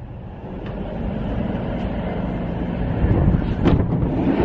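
Low, steady rumbling noise of wind buffeting the microphone, growing louder over the first second, with a couple of light knocks near the end.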